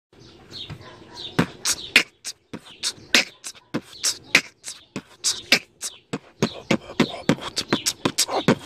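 Vocal beatboxing: fast mouth percussion of sharp clicks and hissing beats in a steady rhythm, starting faintly and growing loud after about a second.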